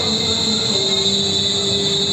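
A man's voice in Quran recitation over a PA system, holding one long steady note with no change in pitch.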